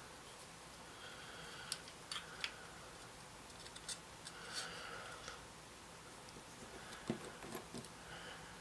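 Faint handling of plastic model-kit parts being fitted together: a scattering of small sharp clicks of plastic on plastic, with brief light scraping in between.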